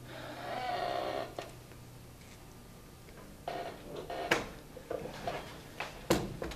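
A brief ringing sound, about a second long, at the start. It is followed by scattered knocks and clatters, the loudest a sharp knock a little past four seconds in.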